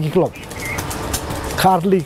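A man talking in short phrases, with a pause of about a second in between filled by a steady low background rumble.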